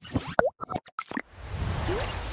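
Motion-graphics sound effects for an animated logo outro: a quick run of short pops and clicks, one with a sliding pitch, then a whoosh that swells from a little past halfway through.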